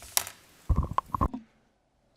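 A few short thumps and rustles of handling noise close to a microphone, ending abruptly about a second and a half in.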